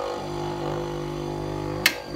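Japanese-domestic 100 V bench grinder with two 150 mm stones running with a steady electric hum. A sharp click comes near the end as its front switch is pressed.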